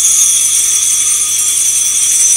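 Altar bells shaken continuously, a loud, high jingling ring held without a break.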